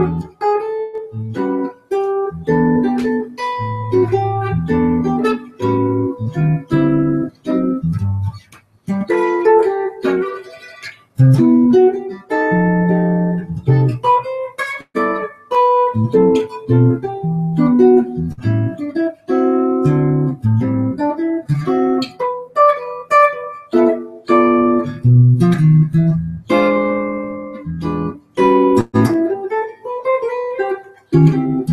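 Solo jazz guitar on a hollow-body archtop, played as a chord-melody arrangement: plucked chords and bass notes under a melody line, in phrases with short breaks between them.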